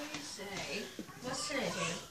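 Speech only: a voice talking softly, the words indistinct.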